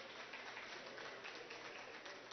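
Faint room tone of a large assembly chamber: a low, steady hiss with no distinct event.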